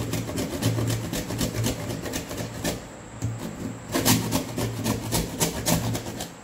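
A ball of dried, hardened fondant being grated on a hand grater: quick repeated rasping strokes against the grater's teeth, a few times a second, with a run of harder strokes from about four seconds in.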